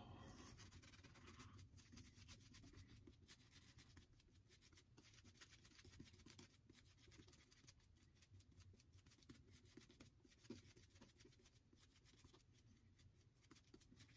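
Faint, irregular scratchy swishing of a shaving brush working soap lather onto the face, close to near silence.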